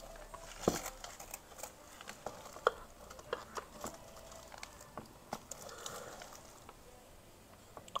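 Faint, irregular crinkling and small sharp clicks of a thin foil sheet being handled and pressed onto a plaster canvas with an iron.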